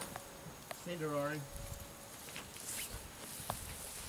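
Faint outdoor background with a brief bit of a man's voice about a second in and a few faint ticks.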